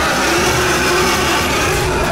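Loud, steady rushing sound effect laid over dramatic background music.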